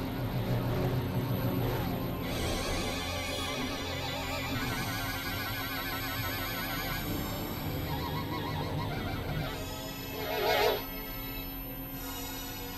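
Experimental synthesizer drone music: low steady drones under high warbling tones that wobble rapidly in pitch, with a brief louder swell of harsh, noisy tone near the end.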